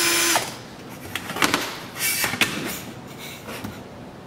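Cordless drill turning the oil injection pump of a Rotax two-stroke snowmobile engine to prime it, running at a steady speed and stopping about half a second in. After that, a few short clicks and knocks.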